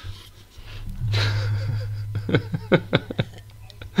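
Men laughing hard and breathlessly, wheezing and gasping, in quick short pulses through the second half.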